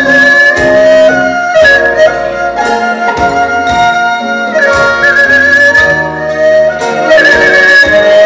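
Instrumental break of a slow Thai luk thung song's backing track: long held melody notes with a slight waver over sustained chords and bass, with no singing.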